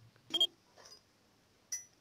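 Two brief clinks about a second and a half apart, each with a short ringing tone, one just after the start and one near the end.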